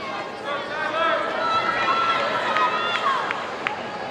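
Many overlapping voices of a crowd in a large arena, talking and calling out, with one longer held call in the middle and a few sharp claps or knocks near the end.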